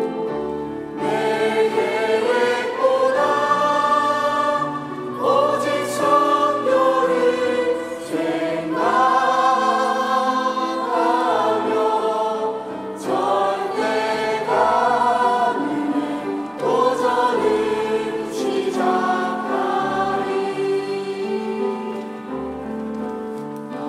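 A mixed church choir of adults and children singing a Korean hymn in Korean, with sustained low instrumental notes beneath the voices.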